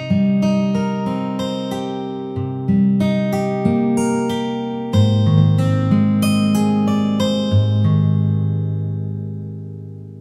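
Sampled acoustic guitar (Ample Guitar M virtual instrument) playing a picked chord progression, with quick repeated note attacks and the chords changing every second or two. The last chord rings and fades toward the end.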